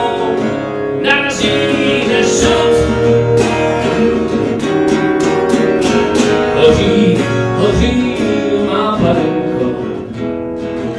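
Acoustic guitar strummed, with a man singing along into a microphone: a live song.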